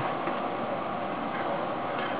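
Steady background hiss of room tone, even throughout, with a faint steady tone underneath.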